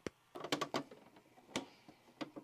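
A few scattered clicks and small clunks from a VCR as its front-panel stop button is pressed. The deck is balking at the tape loaded in it and the stop button is not working.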